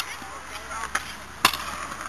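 Stunt scooter knocking on skatepark concrete as the rider rolls away: two light clicks just before a second in, then one sharp knock about a second and a half in.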